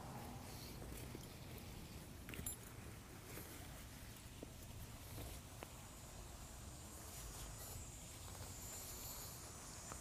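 Faint rustling and a few soft clicks of a fall-protection harness's webbing straps and metal buckles as it is stepped into and pulled up, over a quiet outdoor background with a faint high insect buzz in the second half.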